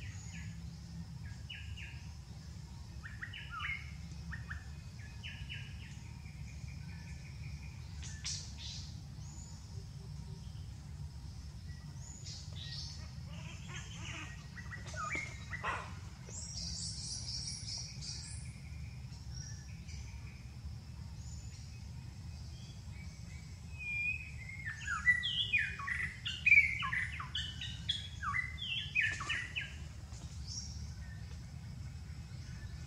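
Wild forest birds chirping and calling in short scattered phrases, with a busy run of loud chirps about four-fifths of the way through. A steady low rumble sits underneath.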